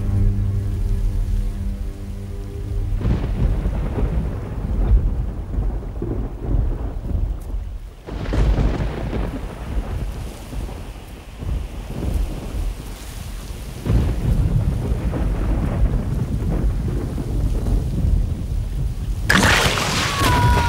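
Thunderstorm effects on a film soundtrack: heavy rain with rolling, rumbling thunder that swells several times. Low sustained music in the first few seconds gives way to the storm, and a sudden loud hit comes near the end.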